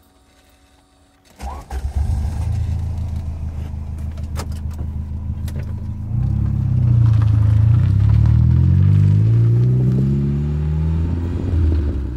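A classic car's engine is cranked and catches about a second and a half in, then runs steadily. From about six seconds in it gets louder and revs up, its pitch climbing toward the end as the car pulls away.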